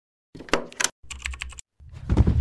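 Logo-animation sound effect of rapid typing-like clicks in two quick runs, then the start of a deep low swell just before the end.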